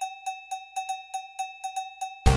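Cowbell-like percussion opening the closing music: a quick pattern of short, ringing metallic strikes on one pitch, about six a second, with the full music kicking in right after.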